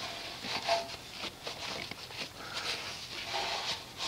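Soft-bristled wheel brush scrubbing a soapy alloy wheel: faint, irregular swishing strokes as it works over the spokes and in between them toward the wheel barrel.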